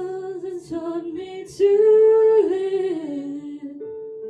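A woman's voice singing a slow worship song, drawing out long notes, with the loudest held note about halfway through, over soft sustained keyboard accompaniment.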